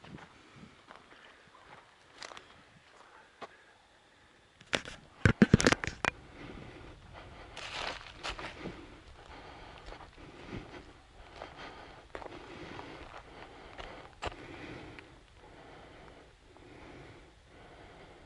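Footsteps of a person walking through grass or scrub at a steady pace, about one step every 0.7 s. About five seconds in there is a short run of loud clicks and knocks, the loudest sound here.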